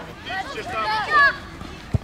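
High shouted calls across a football pitch, with a single thud of the ball being kicked near the end.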